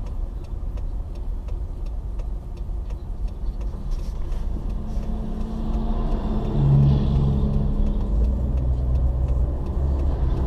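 Steady road and engine rumble heard from inside a moving car, with the engine drone of heavy trucks swelling as they pass close by in the oncoming lane, loudest about seven seconds in.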